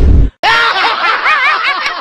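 A loud blast of noise cuts off sharply, then laughter follows: a snickering laugh whose pitch goes quickly up and down, added to the video as a comedy sound effect.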